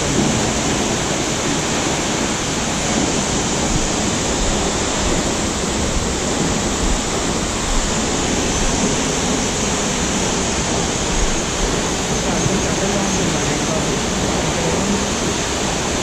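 Steady rushing of a waterfall and the rocky stream below it: a continuous, even wash of water noise.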